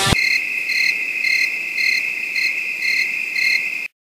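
Crickets chirping: a steady high trill with a faint pulse about three times a second, after rock music cuts off abruptly at the start. The chirping stops suddenly just before the end.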